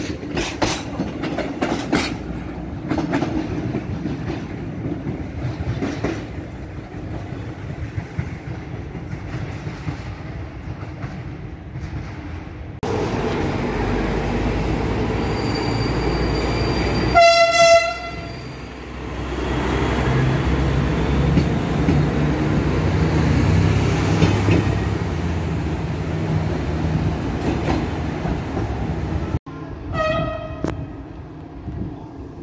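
Railway coaches rolling slowly past with clatter of wheels over rail joints. Then a Siemens Desiro diesel railcar sounds its horn once for about a second, and its diesel engine runs steadily, growing louder.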